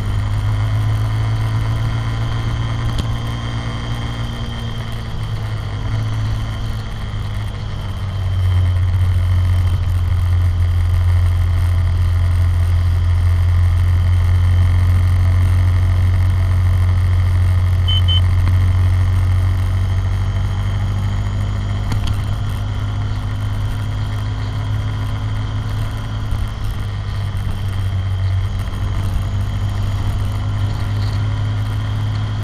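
ATV (quad bike) engine running while riding along a road, with a steady low drone that gets louder for about twelve seconds in the middle.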